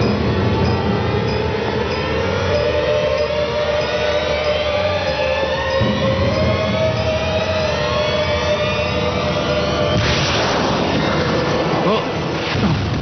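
Dramatic film score under an action scene: a loud, tense drone whose tones climb slowly and steadily, over a low rumble, with a rush of noise about ten seconds in.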